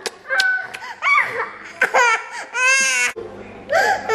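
Young children laughing and giggling, with one long high-pitched squeal that cuts off abruptly about three seconds in. Near the end a toddler starts to cry.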